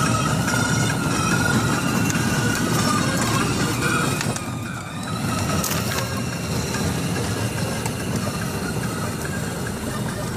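Children's battery-powered ride-on toy jeep driving over asphalt: hard plastic wheels rumbling and crunching, with the thin whine of its electric gear motor. It is briefly quieter about halfway through.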